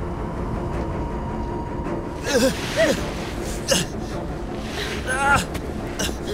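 Short wordless shouts and gasps of exertion from people running and floundering through deep snow, four brief cries in the second half, over a steady rushing background noise.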